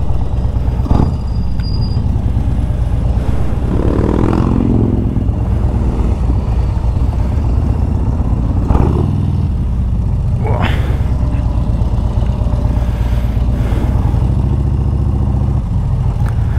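Harley-Davidson Road Glide's V-twin engine running steadily at low speed as the motorcycle rolls slowly, with a few brief knocks or clicks over it.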